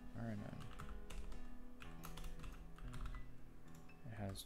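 Typing on a computer keyboard: irregular runs of key clicks as code is entered, over quiet background music with long held notes.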